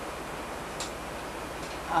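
A pause filled with steady hiss from a home videotape recording, with a faint single click about halfway through. The woman's voice comes back in right at the end.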